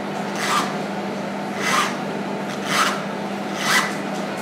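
Small steel palette knife scraping oil paint across canvas in four short strokes, about one a second.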